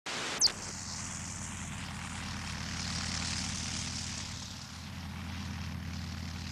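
Propeller aircraft engine droning steadily, as of an early biplane in flight. A brief sharp click sounds about half a second in.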